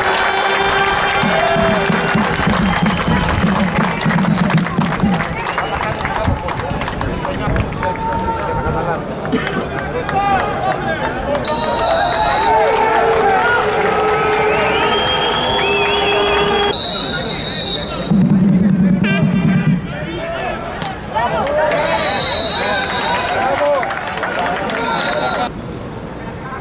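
Players' and onlookers' shouts and calls on a football pitch, with several short high whistle blasts in the second half.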